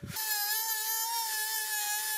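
Die grinder fitted with a carbide burr starting up and running at a steady high whine, with a hiss, as it cuts into steel.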